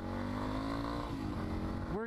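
Yamaha XT250's single-cylinder engine running under way, its pitch rising through the first second and then falling.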